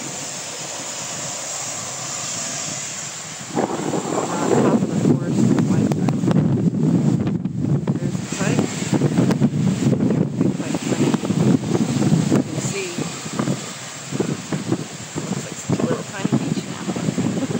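Ocean surf washing steadily, then from about three and a half seconds in, loud gusty wind buffeting the microphone, which covers the surf for the rest of the clip.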